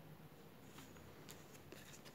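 Near silence, with a few faint light ticks and rustles of paper stickers being handled and shuffled.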